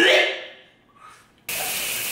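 A man retching: one loud, voiced heave that fades within about half a second. About one and a half seconds in, a sudden cut to the steady hiss of a shower running.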